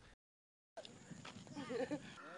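A moment of dead silence, then faint ambient sound with a high-pitched, wavering, bleat-like voice rising and falling over the last second.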